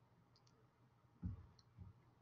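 Near silence with a few faint computer-mouse clicks, and two soft, short low thumps past the middle.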